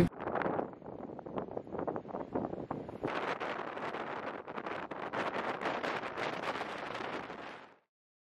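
Strong, gusty wind buffeting the microphone on the deck of a sailboat at anchor, with rough crackling gusts that grow louder about three seconds in. It cuts off abruptly shortly before the end.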